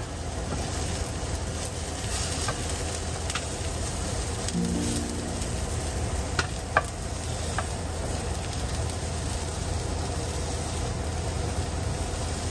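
Eggplant slices frying in a nonstick pan, a steady sizzle, with a few light clicks as a wooden spatula turns the pieces.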